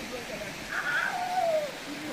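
A person's drawn-out cry about a second in, falling in pitch as it goes, over the steady rush of water running down a rock slide.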